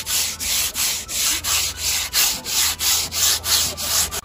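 Hand sanding block with sandpaper rubbed back and forth over an old wooden tabletop, in even strokes about four a second. The old finish is being sanded off before the table is repainted.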